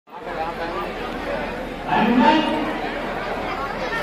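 Indistinct chatter of several people talking at once, with one voice coming up louder about two seconds in.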